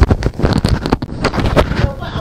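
Loud, irregular rustling and bumping of fabric being handled close to the microphone, as a face mask hanging at the neck is fiddled with; dense crackles and low thumps throughout.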